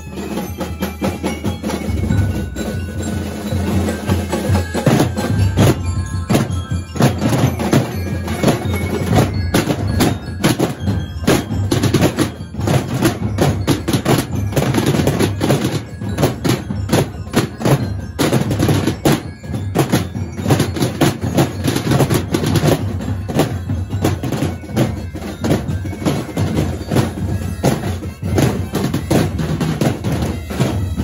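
A drum corps of marching drums played with sticks, beating a loud, fast and dense rhythm that runs without a break. A few short ringing tones sound over the drumming in the first seconds.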